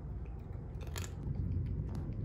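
Cat chewing and crunching dry kibble, with a few sharp crunches, the loudest about halfway through.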